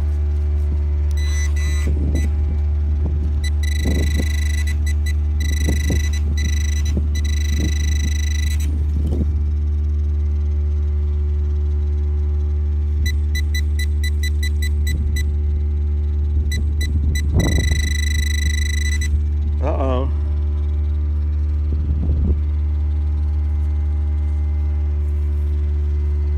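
A steady engine drone runs under metal-detector beeps. The beeps come as several bursts of a high tone, a quick series of rapid pulses, then one long tone. Short scrapes and knocks of digging in loose soil are scattered between them.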